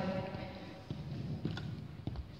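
A few faint high-heel footsteps knocking on a hard hall floor, about two-thirds of a second apart, with the hall's reverberation.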